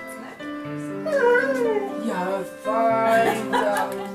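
Collie whining, in two spells: a long, falling whine about a second in and a wavering one near the three-second mark, over background piano music.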